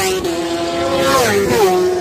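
Racing motorcycles passing close by at speed, the engine note dropping in pitch twice as bikes go past, then one engine note holding steady as it pulls away.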